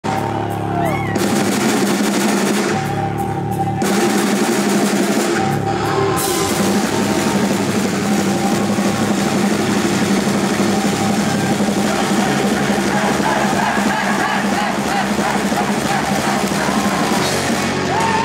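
Live punk rock band playing the start of a song at full volume, with drums and electric guitars; the opening few seconds come in stop-start hits before the band settles into a continuous full sound.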